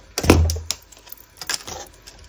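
A dull thump about a quarter second in, followed by several light clicks and taps: paper craft pieces being put down and handled on a cutting mat.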